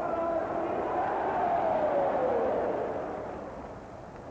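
Football stadium crowd cheering and chanting in celebration of a goal, the massed voices holding a sung note that slides down in pitch. The sound fades toward the end.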